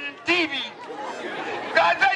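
A voice speaking in short phrases, with crowd chatter filling a pause of about a second in the middle.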